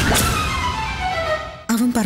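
Dramatic background-score sting: a sudden hit with a low rumble, then a chord of sustained tones sliding steadily downward in pitch for about a second and a half, cut off as speech comes back in.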